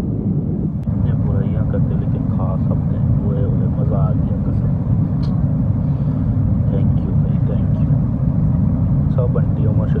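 Airliner cabin noise in flight: a loud, steady low rumble of engines and airflow, with faint voices over it.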